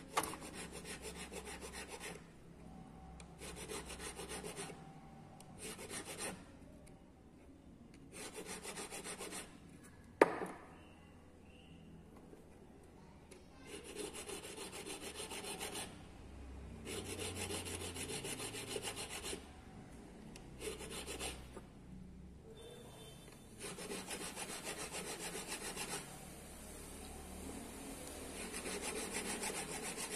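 Needle file rasping across the faceted side of a 16k gold ring braced on a wooden bench pin, in runs of rapid strokes a second or two long with short pauses between. A single sharp tap comes about ten seconds in.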